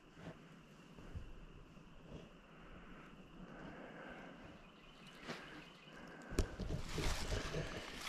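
Quiet woodland ambience with a few faint clicks. In the last couple of seconds it fills with rustling and knocks as the handheld camera is moved and turned around.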